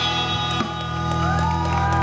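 Live rock band with electric guitars and bass holding the last chord of a song so that it rings out, amplified through a PA.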